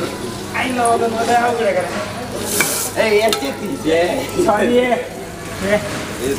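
Water running from a tap onto a steel plate being rinsed, a steady splashing hiss, with a brief louder hiss about halfway through. Voices talk over it.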